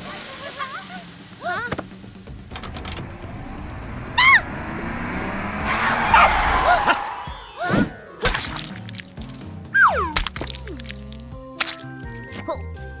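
Cartoon soundtrack: background music with comic sound effects: several short high cries, a rushing noise that swells to its loudest about six seconds in, and knocks and crashes.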